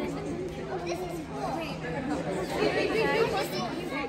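Many children's voices chattering at once in a large hall with a lively echo, busiest about two-thirds of the way in. A steady low hum runs underneath and stops near the end.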